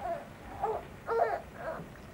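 An infant crying in short, high-pitched wails, about four in quick succession.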